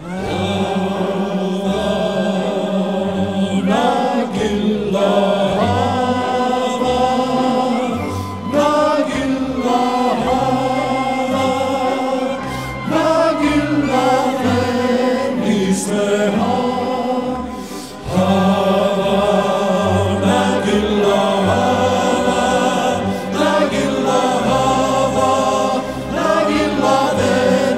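A live pop song: a male lead singer with group voices over a backing track with a pulsing bass line.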